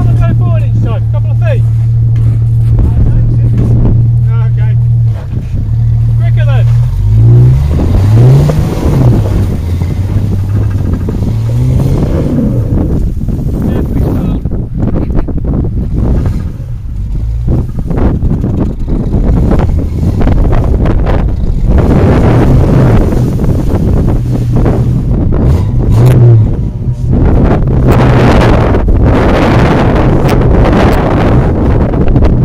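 Jeep Grand Cherokee engine idling steadily, then revving up and down repeatedly from about seven seconds in as the stuck 4x4 tries to drive out of deep snow and mud. A rushing noise builds up under the engine later on.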